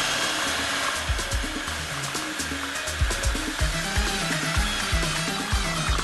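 Electric food processor running steadily, its blade mincing boiled cauliflower to a fine crumb, with a continuous motor whir.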